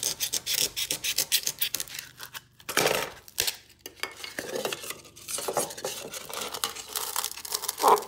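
Scissor blade scoring and cutting a styrofoam block, a rapid scratchy rasp with a short pause partway through. Near the end the trimmed foam is pushed down into a metal pail and rubs against its sides.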